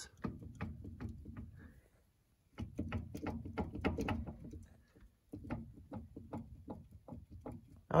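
A screwdriver levering against the ring gear and carrier of an open front differential on a Ford F-250 Highboy. Metal clicks and clunks come in three spells as the gear is rocked to check the bearings for play.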